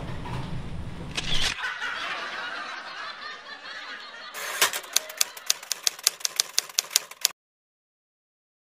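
A typewriter sound effect: a run of rapid, evenly spaced key clicks, about six a second, in the second half, cutting off suddenly. Before it, a noisy sound with a deep low end stops abruptly about a second and a half in and fades to a hiss.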